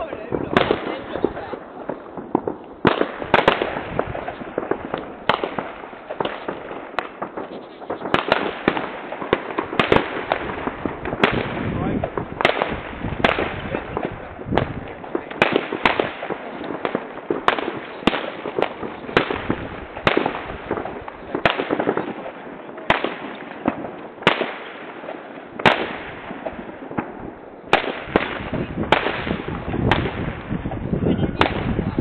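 Fireworks rockets and firecrackers going off again and again: irregular sharp bangs and crackles, sometimes several a second, over a steady background rumble of more bangs.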